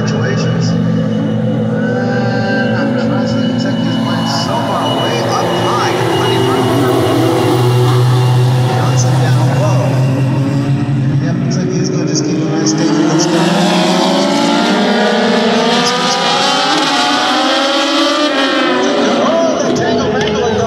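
A pack of Legends race cars, with small Yamaha motorcycle engines, running together on the track. Several engine notes overlap, and from about halfway through they rise and fall as the cars accelerate and lift.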